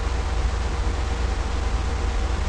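Steady background noise between words: a low hum and rumble with an even hiss over it, and no distinct sound events.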